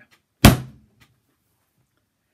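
A slab of porcelain clay slammed down once onto a canvas-covered table, a single heavy thud about half a second in. Slamming it like this loosens up stiff clay that has been stored for months.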